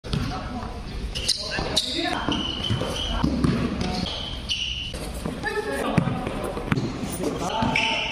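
A basketball bouncing on a hard court during a pickup game, with short sharp impacts and players' voices calling out.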